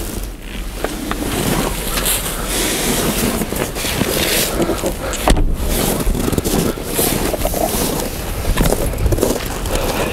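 Wind and handling noise on a handheld camera's microphone: a steady rough rush with scraping, broken by a brief drop about five seconds in.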